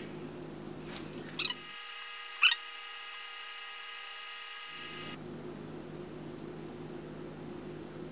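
Two short, light knocks of small objects set down on a tabletop, about one and a half and two and a half seconds in, over a quiet, steady room hum.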